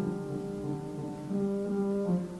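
Violin and piano duo playing a classical violin sonata. The violin holds sustained low notes, changing pitch every second or so, in an old live recording.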